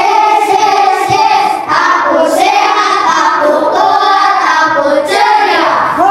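A group of schoolchildren singing together in unison, in phrases of a couple of seconds with long held notes.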